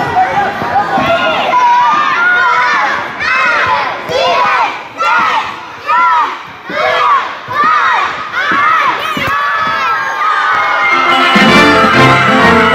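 Young children shouting and cheering with high voices, breaking into a run of separate shouts about once a second. Music comes in near the end.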